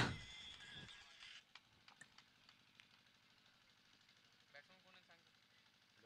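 Near silence: a faint steady hum, a few faint ticks, and faint distant voices about three quarters of the way through.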